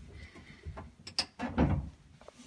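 Scattered clicks and knocks with some rustling as a Jeep seat is shifted out of the way. The sharpest click comes a little past halfway, with the loudest knock just after it.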